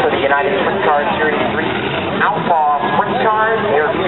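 Winged sprint car engines revving as the cars circle the dirt track, pitch rising and falling repeatedly, mixed with voices from the crowd.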